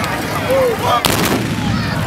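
Volley of black-powder muskets fired almost together by a line of charging tbourida horsemen: one loud, slightly ragged crack about a second in, with a short rolling echo.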